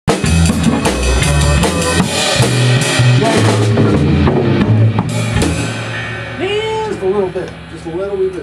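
Rock band with a drum kit, electric guitar and electric bass playing loud, with a steady drum beat, then stopping about five and a half seconds in. A low amplifier hum lingers after the stop.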